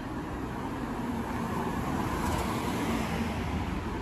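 A car driving along the street, a steady hum of engine and tyres that grows a little louder toward the middle and eases off a little near the end.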